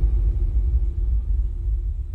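Deep rumbling bass sound effect of an animated logo intro, with a faint steady tone held above it, slowly dying away.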